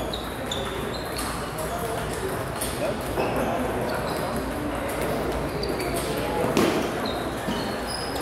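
Table tennis balls clicking irregularly off tables and bats from several tables at once, with voices in the background.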